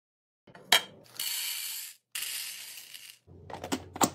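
A sharp click, then about two seconds of hissing noise in two stretches. Near the end, a few short plastic clicks from the push-button lid of a plastic food storage container being pressed.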